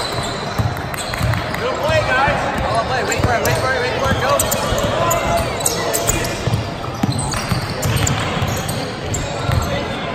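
Basketball bouncing on a hardwood gym floor as it is dribbled, repeated low thumps, with indistinct voices around it.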